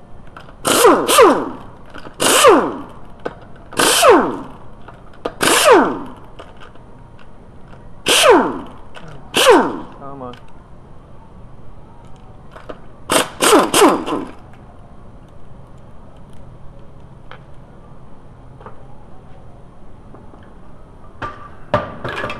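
Power impact wrench run in short bursts, about eight in all, each under a second with a pitch that falls, spinning the wheel bolts out; the last few come in quick succession.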